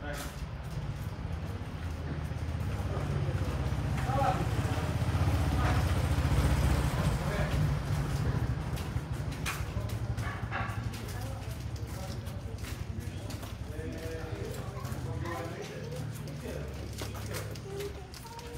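Outdoor pedestrian-lane ambience: indistinct voices of passers-by over a low rumble that swells in the middle, with a few sharp clicks.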